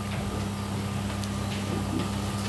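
Room tone in a meeting hall: a steady low hum with a few faint ticks.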